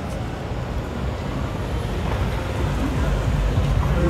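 A car driving past close by, its engine and tyre noise growing louder over the last second or so, over general city street noise.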